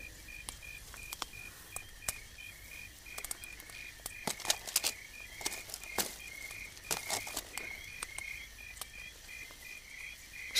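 Faint crickets chirping steadily in an even pulse of about two chirps a second, with scattered light clicks and rustles.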